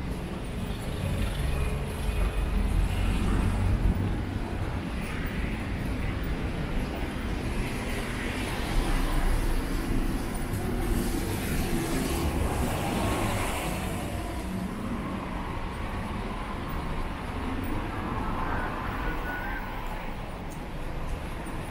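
Urban road traffic: cars and a city bus passing along the street, with a steady low rumble that swells louder about two to four seconds in and again around nine seconds as vehicles go by.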